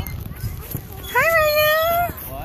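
A young child's wordless, drawn-out high squeal: it rises about a second in, then holds one steady pitch for almost a second.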